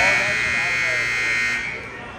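Gym scoreboard buzzer sounding one long steady blast at the clock reaching zero, signalling the end of a wrestling period; it cuts off sharply near the end, leaving background chatter.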